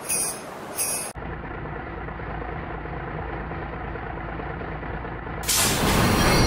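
Music with a steady beat that cuts off about a second in. A garbage truck's engine then runs with a steady low rumble, and near the end a louder hissing, rushing noise comes in over it.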